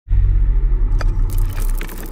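Logo-intro sound effect: a deep, pulsing bass rumble with a sharp hit about a second in, then a high shimmering sweep as it begins to fade.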